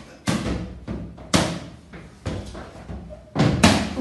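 Balloons being batted by hand: about five hollow hits at uneven intervals, the last two in quick succession, as three balloons are kept in the air at once.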